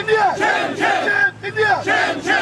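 Protest slogans shouted in short, loud phrases through a megaphone with a crowd of demonstrators, with a brief break about a second and a half in.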